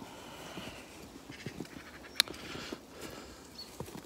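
Footsteps crunching through snow, with a single sharp click about two seconds in.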